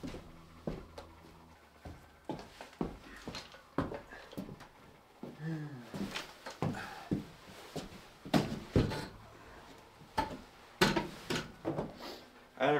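Knocks and clunks of a large folded patio umbrella's pole and frame being carried into a wooden shed and set upright, mixed with footsteps on the shed floor. A brief sound falling in pitch comes about five and a half seconds in.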